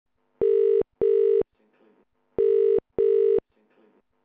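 Telephone ringback tone in the double-ring cadence: two short burrs, a pause of about a second, then two more.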